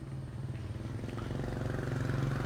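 An engine running steadily with a low hum, slowly growing louder as it draws nearer.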